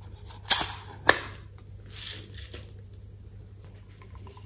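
Two sharp plastic snaps about half a second apart early on, as a small plastic slime container is handled and opened, followed by a softer brush of plastic near the middle.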